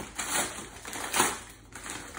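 Yellow padded paper mailing envelope being pulled and torn open by hand: crackling, rustling paper in short bursts, the loudest about a second in.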